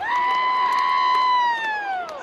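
One spectator's long, high-pitched shout close by. It starts suddenly, holds one pitch, then slides down as it trails off, over the arena crowd.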